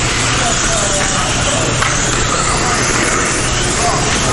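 Kyosho Mini-Z 1:28-scale electric RC cars with 2500Kv motors running laps on a foam-tile track, heard as a steady noise with faint voices in the hall.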